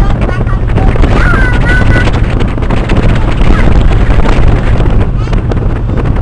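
A boat's engine running steadily under heavy wind noise on the microphone, with brief voices about a second in.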